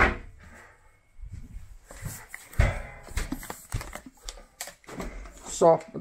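Plastic bottles being handled and set down on a windowsill: an irregular string of knocks, clatters and rustles.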